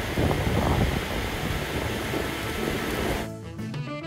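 Heavy rain from a sudden cloudburst pouring down over open railway tracks and a platform, a loud even hiss. About three seconds in it cuts off and background music takes over.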